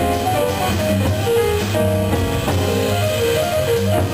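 Jazz piano trio playing: a line of single piano notes over bass and drum kit.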